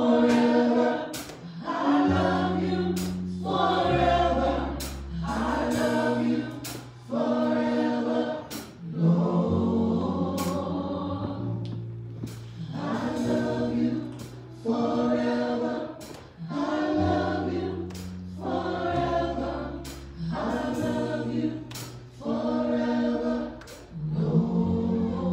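Church worship team singing a slow praise chorus in short repeated phrases, a woman leading on microphone with other voices joining, over an electric bass guitar holding long low notes.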